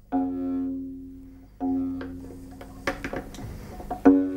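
The six-string chicotén, an Aragonese salterio, plucked by hand: two plucks of the same low note, about a second and a half apart, each ringing and dying away, then a few lighter plucks near the end.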